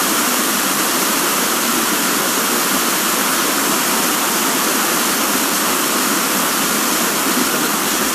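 Loud, steady FM radio static: an even hiss from an RTL-SDR receiver as the distant RMF FM signal fades out below the noise.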